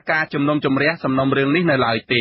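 Speech only: a voice reading news narration in Khmer, with no other sound.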